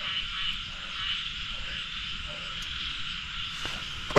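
A steady night chorus of frogs calling, with insects, carrying on evenly without a break.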